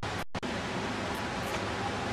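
Steady, even hiss-like noise with no distinct events, cutting out twice for a split second near the start.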